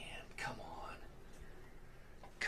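A man mutters a faint, whispery syllable under his breath about half a second in, over low room noise.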